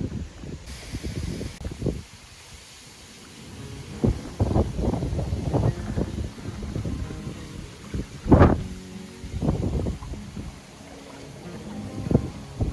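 Strong wind buffeting the microphone in irregular gusts, the loudest about two-thirds of the way through, with choppy water lapping at the shore.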